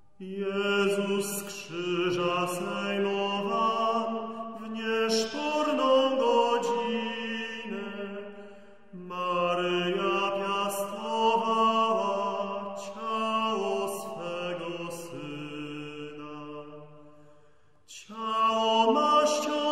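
Vocal ensemble singing a late-15th-century Polish hymn in a chant-like style. Two long sung phrases are separated by a short breath break about nine seconds in, and the second phrase fades away near the end.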